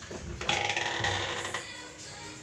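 Rubbing and scraping against a wooden door as a head and hair press against it, lasting about a second, with music faint in the background.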